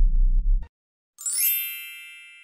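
A low bass note from the outro music stops abruptly under a second in. After a short silence, a bright chime with a quick rising shimmer rings out and fades slowly.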